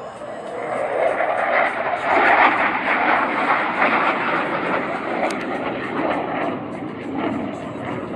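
A fighter jet flying past, its engine roar swelling about a second in and then slowly fading as it moves away.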